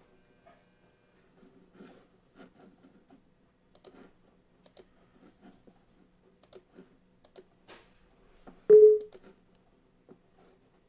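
Faint scattered clicks of a computer mouse and desk handling, with one much louder knock about nine seconds in.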